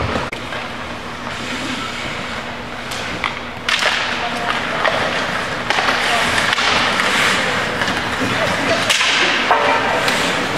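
Ice hockey game sounds in a rink: skate blades scraping the ice and a few sharp stick-on-puck clacks, with spectator voices in the stands. The noise grows louder about four seconds in and again near six seconds.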